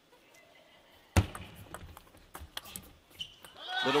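Table tennis ball struck by rackets and bouncing on the table during a short rally: one sharp, loud knock about a second in, then a few fainter clicks.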